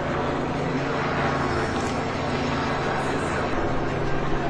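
Steady outdoor crowd noise from a large gathering, over a continuous low machine hum.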